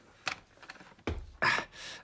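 Sound effect of a key clicking and rattling in a stiff casket lock that will not open: scattered short clicks, with a heavier clunk about a second in.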